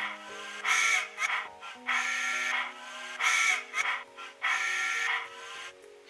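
A short electronic tune played through the small speaker of a TCS WOW Sound decoder in an HO-scale model locomotive, while the decoder sits in its Audio Assist programming mode. The tune is also sold as a cell-phone ringtone. Held low notes step in pitch under a higher phrase that repeats about five times.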